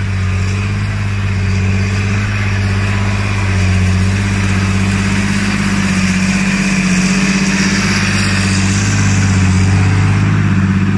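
John Deere 8300 tractor's six-cylinder diesel engine running steadily under load while pulling a four-furrow plough, growing slightly louder as it comes past. A hiss builds up near the end as the plough goes by.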